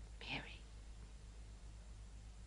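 A woman's short, breathy whispered sound, a catch of breath about a quarter second in, over a low steady hum.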